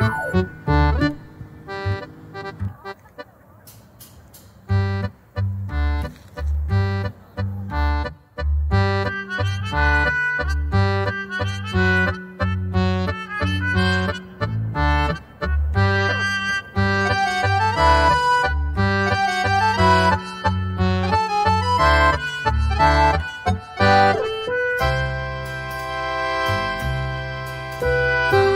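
Background music: a cheerful instrumental with a melody over a regular bass beat, dropping quieter for a couple of seconds near the start.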